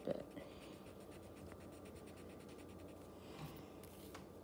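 Faint scratching of a colored pencil shading on paper in short, repeated strokes.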